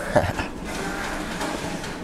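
A young man's brief laugh, then steady room hiss.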